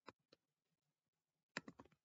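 Faint clicking of computer keys: two single clicks, then a quick run of several about one and a half seconds in.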